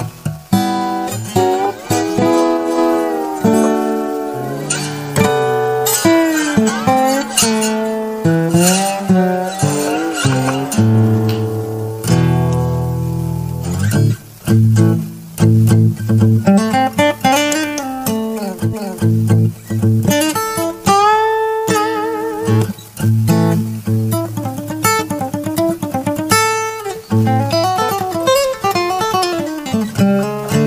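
Steel-string acoustic guitar played fingerstyle blues in drop D tuning, with bass lines and lead melody picked together and full of smooth sliding and bending notes.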